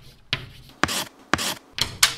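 Chalk scratching on a blackboard in a series of short writing strokes, about four of them, coming quicker and louder in the second half.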